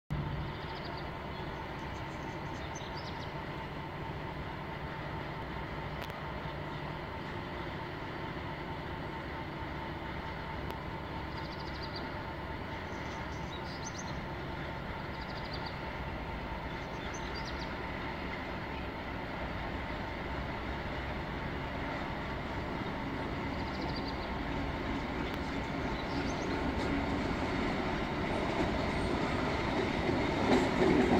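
A class 232 "Ludmiła" diesel locomotive's Kolomna V16 engine rumbling as it approaches with a freight train of tank wagons. The sound is distant and steady at first, then grows gradually louder over the last ten seconds as the locomotive nears.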